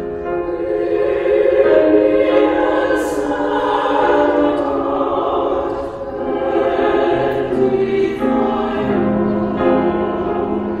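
Mixed church choir of men and women singing slow, held chords in harmony.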